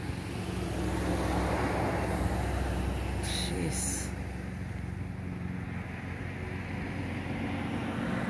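Road traffic: a steady low hum that swells about a second in and eases off after a few seconds, like a car going past. Two brief high-pitched sounds come at about three and a half seconds.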